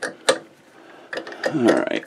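Metal clicks and light mechanical rattling from a Jacobs drill chuck on a bench motor being turned by hand to loosen and release a small bushing, with two sharp clicks at the start.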